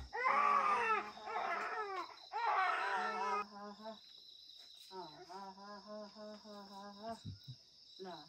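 An infant crying in loud, rising-and-falling wails for the first few seconds, then fussing more softly from about five seconds in; the baby is tired and fighting sleep. Crickets chirr steadily in the background.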